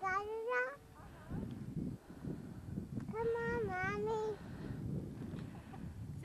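A small child's wordless voice: two drawn-out high-pitched calls, the first rising in pitch in the first second, the second about three seconds in and held for over a second before dipping.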